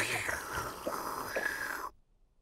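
Cartoon drinking sound of a glass of water being swallowed down: a continuous slurping noise lasting almost two seconds, with a couple of gulps in the middle, that stops suddenly near the end.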